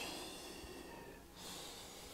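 A man breathing audibly in slow, deep prayer breaths: a strong breath with a slight rising whistle fades over the first second, then a softer second breath comes about a second and a half in.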